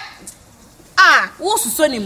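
A short lull, then about a second in a loud, high-pitched vocal exclamation that falls steeply in pitch, followed by more talk.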